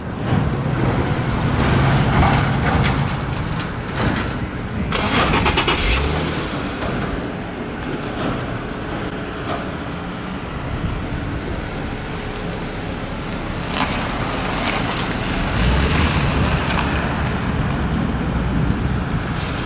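Car engines running close by with road traffic noise, the low engine rumble stronger in the first few seconds and again near the end as a car pulls away.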